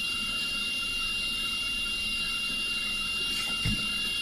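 Steady background hiss with a faint constant high whine, and a couple of faint clicks near the end.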